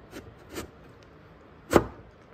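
Jeep Grand Cherokee engine control module being pushed and slid down onto its metal bracket tabs. There are two light knocks early on, then one sharp knock a little before the end as the unit drops into its seated position on the bracket.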